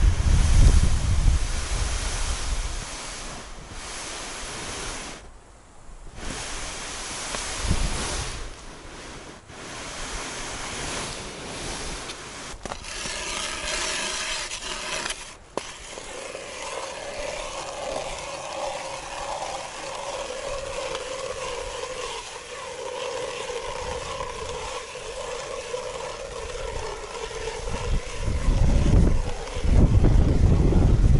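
Hand-cranked spiral ice auger boring a hole through river ice: a rough scraping start, then steady grinding with a held tone for about twelve seconds. Wind buffets the microphone at the start and again near the end.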